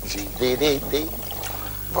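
Coffee pouring from a glass coffee-maker jug, with a voice sounding over it in the first second and a word starting at the very end.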